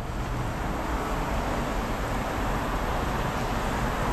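Steady outdoor city ambience: a continuous, even rush of road traffic with a low rumble underneath.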